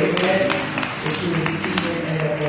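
Congregation hand clapping and indistinct voices over church music.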